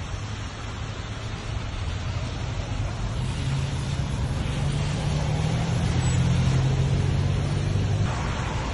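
Steady hiss of heavy rain on wet pavement, with a car engine running close by. Its low hum comes in about halfway through and grows louder toward the end.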